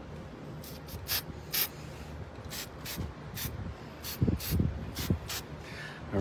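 Aerosol spray-paint can sprayed in about a dozen short, quick hissing bursts, dusting paint lightly around the edge of a stencil. A few low muffled thumps come about four to five seconds in.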